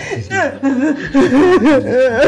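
A person laughing, breaking into a quick run of chuckles about a second in.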